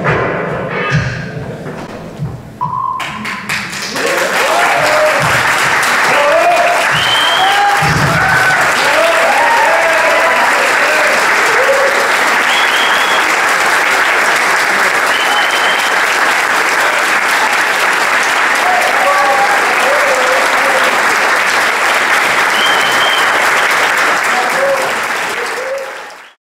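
The dance music ends in the first few seconds, then an audience applauds with cheers and shouts, steady and loud, until it cuts off abruptly at the end.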